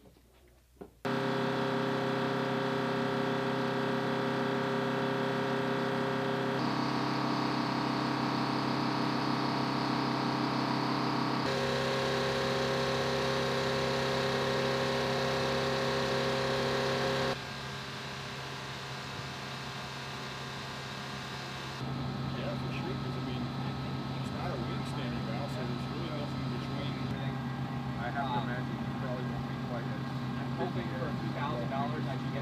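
Steady whine and hum of a KC-135 Stratotanker's jet engines and aircraft systems, starting suddenly about a second in. The pitch and loudness shift abruptly several times, dropping lower for a few seconds past the middle.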